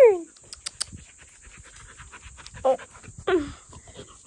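A dog panting quickly and rhythmically as it runs up close, with a few sharp clicks about half a second in.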